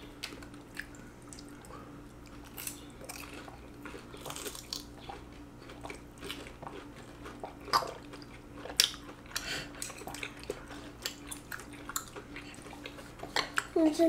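Quiet eating at a table: scattered light clicks of chopsticks against plates and chewing of breaded fried cheese sticks, a few sharper clicks standing out. A faint steady hum runs underneath.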